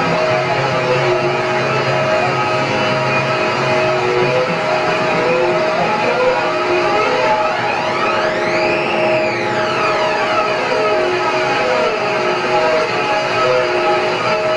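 Live band music: a dense, steady wash of held tones with guitar, and one sweeping tone that rises and falls back about halfway through.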